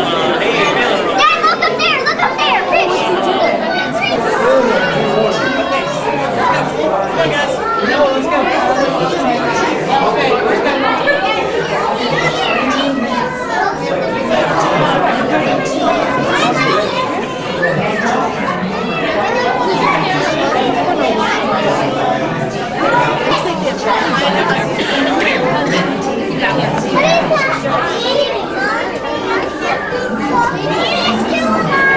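Indistinct chatter of a crowd of visitors, adults and children, many voices overlapping at a steady level with no single speaker standing out, in a large indoor hall.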